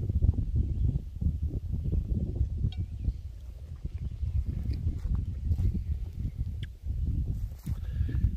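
Wind buffeting the microphone outdoors: a low, uneven rumble with a few faint clicks.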